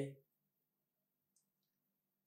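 Near silence: a narrator's voice trails off at the very start, then dead quiet broken only by a couple of very faint high ticks near the middle.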